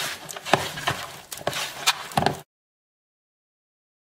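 Bare hands squeezing and working soft butter into icing sugar in a plastic bowl: irregular wet squishes and slaps. The sound cuts out completely about two and a half seconds in.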